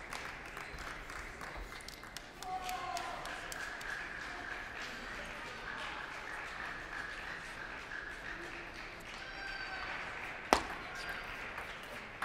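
Large-hall ambience with faint murmuring voices, then a sharp click of a table tennis ball on bat or table about ten and a half seconds in as play resumes, followed by a few lighter ball clicks.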